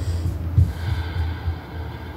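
A breath drawn in through the nose close to the microphone during a pause in speaking, over a steady low rumble.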